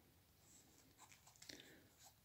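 Near silence, with faint rustling and a few light ticks about a second in from fingers handling a 1/6 scale action figure and its cloth tank top.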